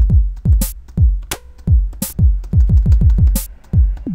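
Electronic drum kit from the Acoustica Studio Drums virtual instrument, played live from a computer keyboard in a loose, irregular pattern. Deep kicks that drop in pitch come several times a second, with about four sharp, bright hits among them.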